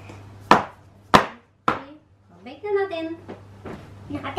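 A filled metal cake tin knocked down on the tabletop three times, sharp knocks a little over half a second apart.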